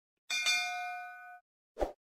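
Bell-like notification ding sound effect, several ringing tones struck together a moment in and fading out over about a second, followed by a short soft thump near the end.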